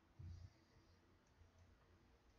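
Near silence: faint clicking from a stylus writing on a tablet, with a soft low thump about a quarter of a second in.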